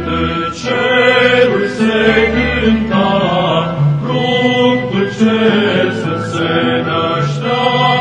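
Male choir singing a slow, chant-like piece in sustained notes, with a small string ensemble accompanying.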